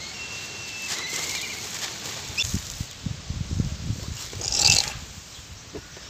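Hands squishing and pressing wet charcoal-ash paste, wet squelches and soft slaps coming in irregular bursts, the loudest about three-quarters of the way through.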